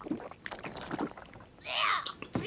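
Cartoon character gulping down a glass of algae juice in a string of short swallows, then a loud gagging splutter near the end as the drink comes back up.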